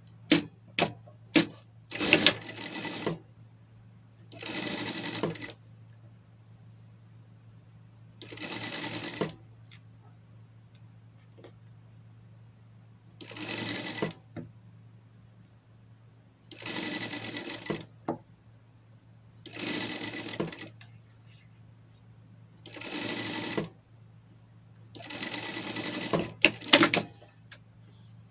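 Industrial straight-stitch sewing machine stitching in eight short runs of about a second each, with pauses between as the fabric is repositioned along an armhole seam. A few sharp clicks come in the first second or so, and a low steady hum runs underneath.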